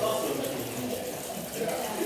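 Indistinct voices talking over a steady, even hiss of noise.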